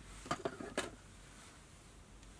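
A few quick light clicks as small tools and materials are handled at a fly-tying bench, all within the first second, then faint room tone.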